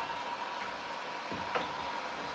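Handheld electric heat gun running steadily, its fan blowing hot air with a constant high hum over the whoosh, used to dry fresh paint. Two faint knocks come in the second half.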